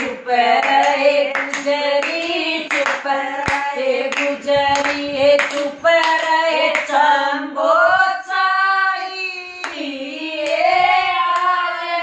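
Group of women singing a Hindi devotional bhajan to Krishna without instruments, clapping their hands in time, about two claps a second, with a lull in the clapping a little past the middle.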